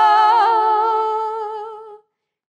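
A single unaccompanied voice holding a long final note with slight vibrato, fading away and ending right at the close.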